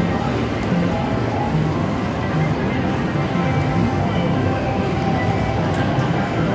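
Reelin N Boppin slot machine's bonus music playing steadily while the win total counts up after a free-game win, over casino chatter.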